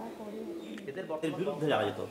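Quiet talking with low bird cooing among it; a man's voice comes in near the end.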